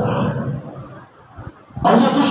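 A man's voice preaching through a microphone, with hall echo. It trails off in the first half second, pauses for about a second, then comes back loud just before the end.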